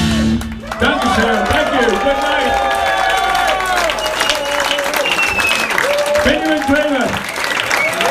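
A rock band's final held chord cuts off just after the start, and the audience breaks into applause with loud cheering and whooping over the clapping.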